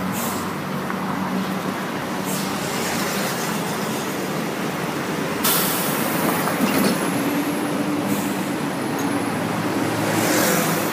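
Bangkok city bus running, heard from inside the cabin: steady engine hum and road noise. A sudden hiss starts about five and a half seconds in.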